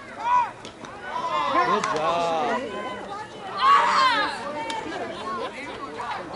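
Softball players and onlookers shouting and calling out, the words not clear. Two loud shouts stand out, one just after the start and one at about four seconds.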